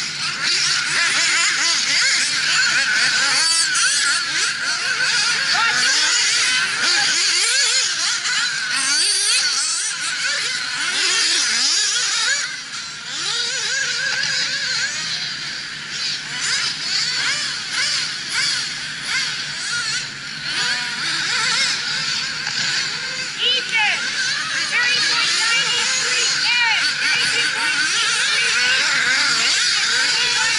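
Several nitro RC buggy engines running at high revs together, their high-pitched whine rising and falling in pitch as the cars accelerate and brake around the track.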